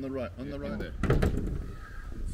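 A few words of speech, then about a second in a single loud thunk from the car's bodywork, as the bonnet is about to be opened.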